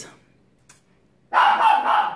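A pet dog barking, starting about a second and a half in after a moment of near silence.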